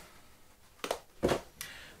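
Handling noise as a mobile phone is lowered and put down on a desk: three short knocks and rustles close together, starting a little under a second in, the middle one the loudest.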